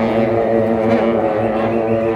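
Several shaojiao, long brass ceremonial horns, blown together in a loud, steady, drone-like chord of held notes.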